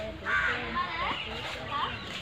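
Children's voices calling out, with a short harsh call about a third of a second in.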